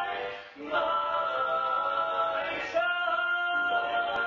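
Barbershop quartet of four men singing a cappella in close harmony, holding sustained chords. A short break comes about half a second in, and the chord changes near three seconds.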